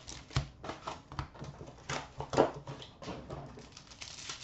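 Wrapped hockey card packs being handled and set down on a glass counter: a string of irregular crinkles, rustles and light taps, the loudest a little past two seconds in.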